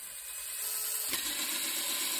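3D-printed spur gears turning on a test rig, driven by a hand-spun flywheel: a steady mechanical running noise that grows louder about a second in.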